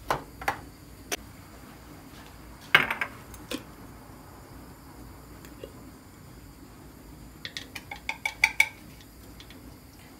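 Kitchen clinks and knocks at a gas stove with a steel saucepan: a few light clicks, a sharper clatter about three seconds in, then a quick run of small clinks near the end as a glass jar of red pepper flakes is opened over the pot.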